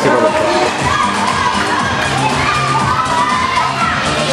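A crowd of children shouting and cheering in a gym hall during a relay race, many voices at once, with music playing underneath.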